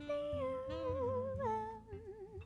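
Woman humming a slow wordless melody that slides gently downward and steps lower, with wide vibrato setting in on the last note near the end, over a low bass accompaniment.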